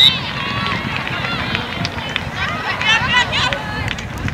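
Voices calling and shouting across a lacrosse field during play, with many short calls from players and spectators overlapping.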